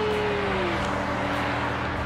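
A drawn-out cheerful 'yay' from a woman, held on one pitch and then sliding down and trailing off under a second in, over a steady rushing noise with a low hum.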